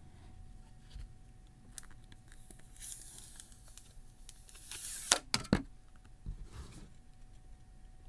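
Backing film peeling off a tempered glass screen protector: a soft tearing hiss lasting about two seconds near the middle, followed by a few sharp clicks of handling. Faint rustles of hands and cloth around it.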